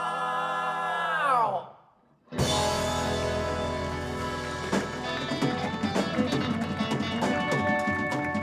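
Several male voices hold an a cappella chord, slide down in pitch together and break off. After a brief gap the full rock band comes in on a sustained chord, with drum and cymbal hits growing busier toward the song's final flourish.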